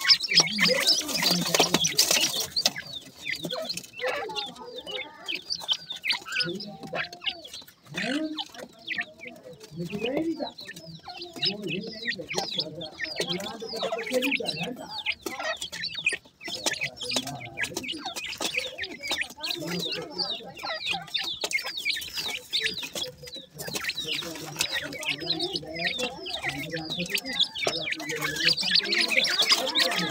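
Young dakhni teetar (grey francolin) chicks calling almost without a break: a busy stream of short high chirps mixed with lower clucking notes.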